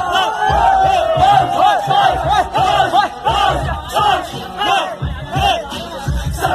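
Concert crowd shouting and chanting together, many voices at once, loud and close, with low thuds underneath.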